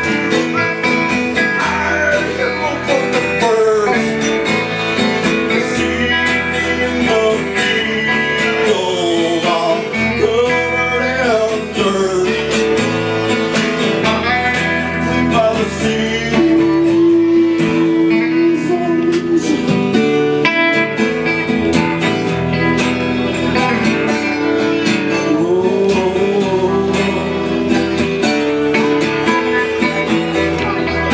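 A folk band playing live, with strummed acoustic guitar, electric guitar, mandolin and upright bass. A melody line slides up and down in pitch over the strumming. The sound is thin and rough, picked up by a camera's built-in microphone.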